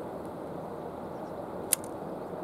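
Steady outdoor background noise with one short, sharp click near the end.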